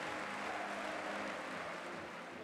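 Steady, even background noise of a football stadium crowd, with no single sound standing out.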